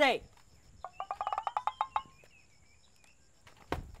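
A fowl's rapid rattling call, about a dozen quick notes in little more than a second, gobble-like, after a short shouted word. A single sharp knock comes near the end.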